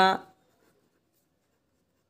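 A spoken word trails off, then near silence with no audible sound.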